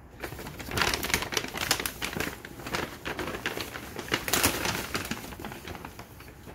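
Paper takeout bag rustling and crinkling as it is handled and opened: a dense crackle that is loudest about a second in and again past four seconds.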